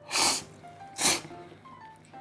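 Two loud slurps of thick Jiro-style yakisoba noodles sucked in from chopsticks, one just after the start and another about a second in.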